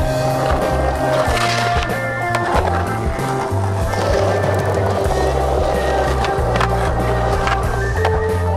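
Skateboard sounds, wheels rolling on pavement with a few sharp clacks of the board, over a loud background music track.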